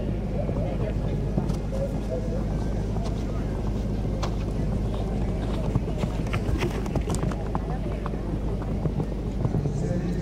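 Open-air arena ambience: a steady low hum and noise bed with faint voices in the background and scattered light clicks at irregular intervals.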